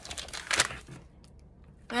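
Paper and plastic crinkling and rustling from a spiral-bound sticker album's page being handled and lifted, with a cluster of short rustles in the first second, loudest about half a second in.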